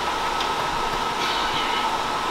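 A steady whirring noise with a constant high whine, like a fan running, with nothing else happening.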